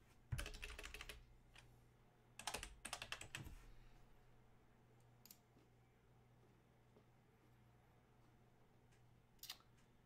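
Faint computer keyboard typing: two short bursts of rapid keystrokes in the first few seconds, then a single click about five seconds in and another near the end.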